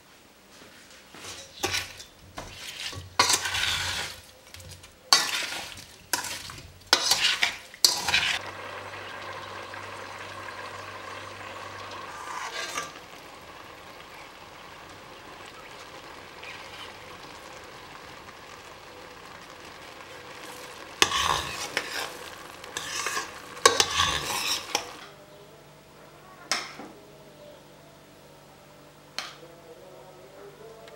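A metal spoon stirring and skimming cherries in bubbling sugar syrup in a stainless steel pot. Clusters of scraping and clinking against the pot come in the first few seconds and again about three-quarters of the way through, over the steady hiss of the syrup simmering.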